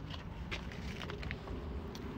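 A few faint footsteps and knocks from the phone being handled, over a low steady rumble.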